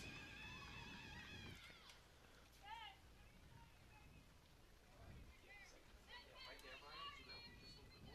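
Faint, high-pitched voices calling and chanting in drawn-out cheers, with a short shout just under three seconds in and a busier stretch of several voices near the end.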